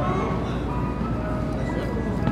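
Ice cream truck's chime tune playing, a melody of single clear notes, over a low steady hum.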